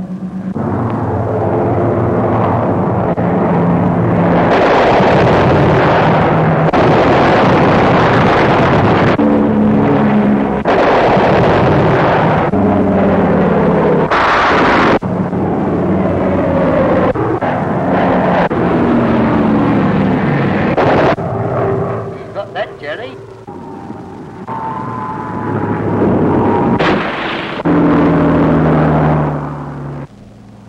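A single-engine fighter's piston engine running loud in a dive, its pitch gliding up and down, with several abrupt cuts in the sound. It drops away briefly about two thirds of the way through, then comes back.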